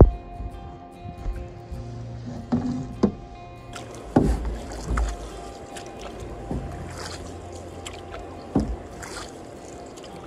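Canoe paddle strokes: the paddle dipping and pulling through the water, with a sharp knock or splash every second or two, over steady background music.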